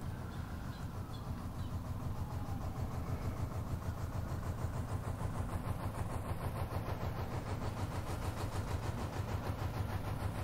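A boat's engine running steadily, a low rumble with a rapid, even beat, growing slightly louder.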